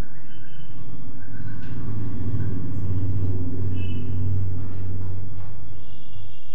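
A low rumble that swells about two seconds in and eases off near the end, with a few faint, short high chirps over it.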